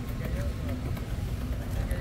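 Low, steady rumble of a car rolling slowly up a paved driveway, with faint voices in the distance.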